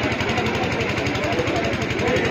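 An engine running steadily, a rhythmic low throb, under the chatter of many voices in a crowd.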